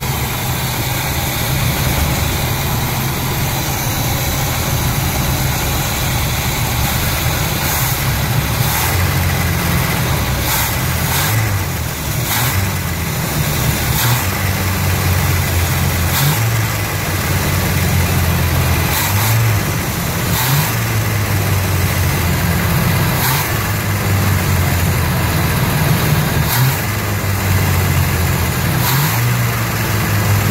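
An RV's 454 V8 engine idling unevenly, its speed wandering up and down, with occasional sharp clicks. The engine has been running rough.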